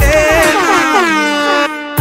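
DJ air-horn sound effect dropped into a dancehall riddim mix: one long blast that falls in pitch while the bass and drums drop out. The beat comes back in right at the end.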